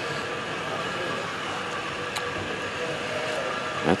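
Steady mechanical hum with a few faint steady tones, and a single short click about two seconds in.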